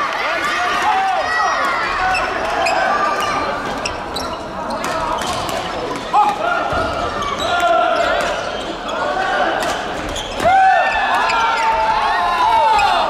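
Sports shoes squeaking on a wooden indoor court floor, many short squeals overlapping, with sharp racket hits on the shuttlecock, the loudest about six and ten and a half seconds in. The hall is large and echoing.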